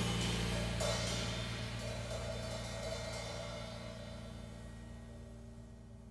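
A jazz ensemble's final chord dying away: sustained low notes and cymbals ring and slowly fade toward silence, with a cymbal stroke about a second in.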